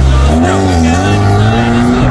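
A car engine revving hard and held at high revs, very loud, with a heavy low rumble and a pitch that wavers and slowly climbs.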